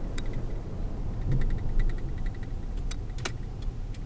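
Steady low engine and road rumble inside the cab of a 2006 Ford F-150 with the 5.4-litre V8, driving along. A run of faint light clicks comes in the middle, and one sharper click near the end.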